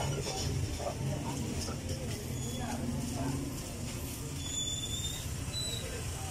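Shop background ambience: a steady low hum with faint voices in the distance.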